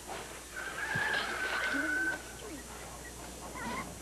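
Quiet barnyard sound effects: chickens clucking softly, with one long steady high note lasting about a second and a half, starting about half a second in, and a few short chirps near the end.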